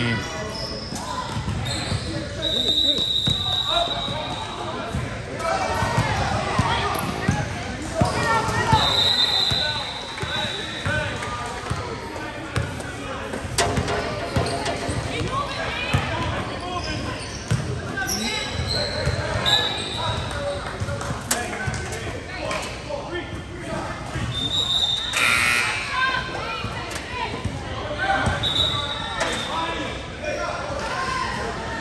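Basketball game play in a gym: a basketball bouncing repeatedly on the court, with players' and spectators' voices echoing in the hall. Several brief high-pitched tones sound through it.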